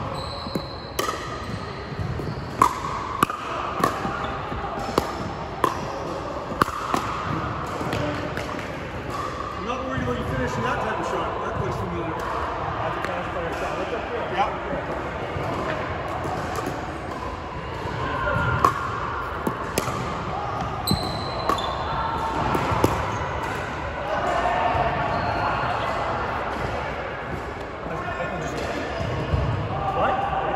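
Pickleball paddles striking a hard plastic pickleball, a string of sharp pops through the rallies, sometimes about a second apart and sometimes further, with the ball ticking off the hardwood court. Voices murmur behind it in a large echoing hall.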